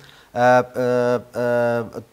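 A man's voice speaking Dari, drawn out into three long syllables held at a nearly level pitch.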